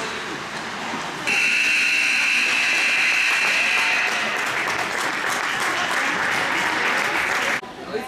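Ice rink scoreboard horn sounding at the end of the period as the game clock runs out. It gives one long, steady blare of about six seconds, starting about a second in and cutting off suddenly just before the end.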